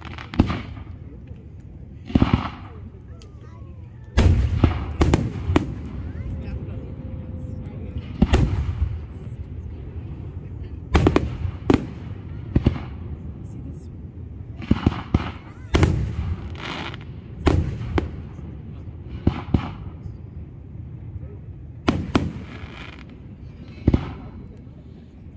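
Aerial firework shells bursting: a long string of sharp bangs, each echoing briefly, some two or three in quick succession.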